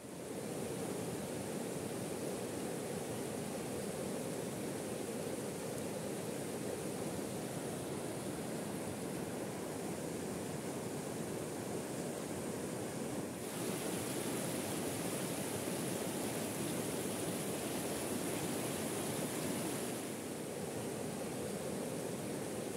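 Shallow river rushing over rocks in rapids: a steady rush of water with no let-up, the hiss growing brighter about 13 seconds in.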